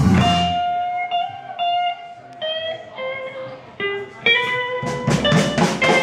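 A live blues band breaks off and an electric guitar plays a run of single, sustained notes alone. The drums and the rest of the band crash back in about five seconds in.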